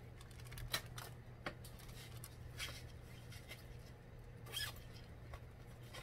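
Paper and packaging being handled: light rustling with scattered small clicks and taps, a few a little louder, over a steady low hum.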